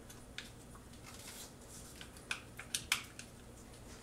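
Utility knife blade slicing through the protruding rubber tire-plug strands to trim them flush with the tread: a few faint scraping cuts, with several sharper snicks between about two and three seconds in.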